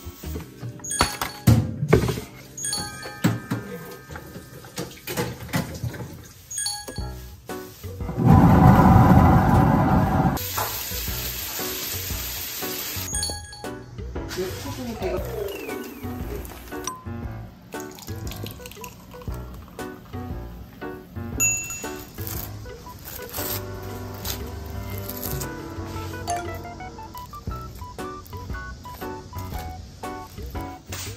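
Background music throughout, with a blender running loudly for about two seconds partway through, blending frozen blueberries with yogurt into a drink, followed by a few seconds of high hiss.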